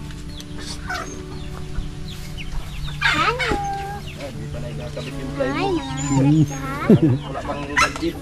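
Chickens clucking, with a loud call about three seconds in and several more between about five and a half and seven seconds, over a steady low hum.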